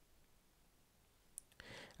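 Near silence, with one faint, sharp click about one and a half seconds in.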